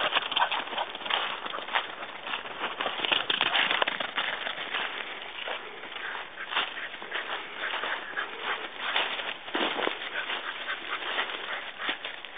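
Dry fallen leaves rustling and crunching underfoot, an irregular crackle of steps through deep leaf litter.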